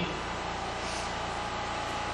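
Steady, even background hiss with no distinct events, the room and recording noise of a lecture hall heard in a pause between words.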